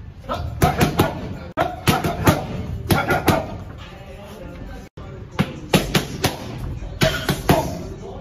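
Boxing gloves smacking into focus mitts in quick combinations of sharp hits. The hits come in two bursts with a lull in the middle.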